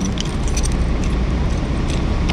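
A bunch of keys on a ring jingling and clicking at a scooter's ignition switch as the key is turned to switch the power on, a series of light, irregular clicks over a steady low rumble.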